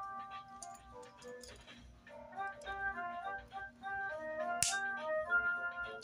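Background music: a light melody of held notes stepping up and down. A few short clicks of plastic building pieces being handled sound over it, the sharpest about four and a half seconds in.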